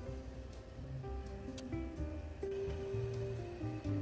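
Quiet background music: a slow melody of held notes stepping from pitch to pitch over a low bass line.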